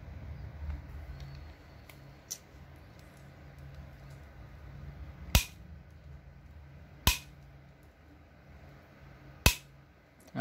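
Three sharp metal clacks, about two seconds apart, as steel hand tools such as small bolt cutters are handled and set down among other tools, with a lighter click before them.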